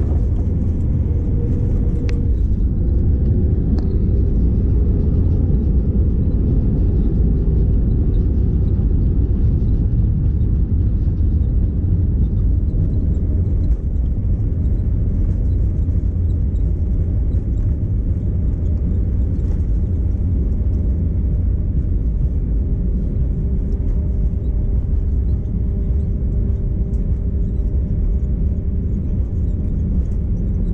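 Steady low rumble inside the cabin of an Airbus A320neo at runway level during landing, with a single sharp knock about two seconds in.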